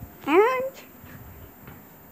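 A young child's short wordless call, rising in pitch, about a quarter second in, then quiet room noise.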